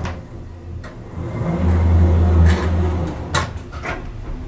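Elevator machinery at work: a low motor hum that swells for about a second and a half and then fades, with sharp clicks and knocks of relays and doors, several close together near the end.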